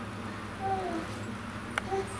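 A faint short high call about half a second long, then a click and a brief second call near the end, over a steady low hum.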